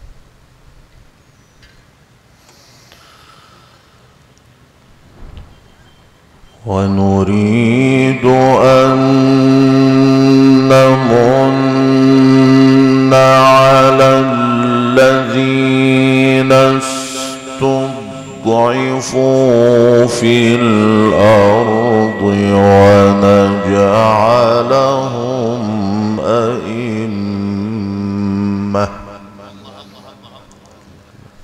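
A male Qur'an reciter's solo voice in the ornamented, melodic mujawwad style, through a microphone. After about six and a half seconds of quiet, he sings out one long phrase of recitation with sustained held notes and melismatic turns, lasting over twenty seconds and ending just before the end.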